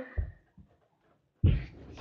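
Two dull thuds of a person jumping and landing, a soft one just after the start and a much louder one about a second and a half in.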